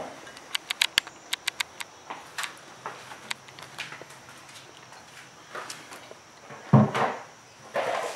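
A quick run of about ten light, sharp clicks in the first two seconds, then a few scattered clicks and a single louder knock near the end, from parts being handled in an open car engine bay.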